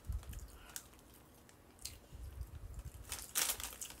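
Plastic snack bag crinkling as it is handled: a few scattered crackles, then a louder burst of crinkling near the end.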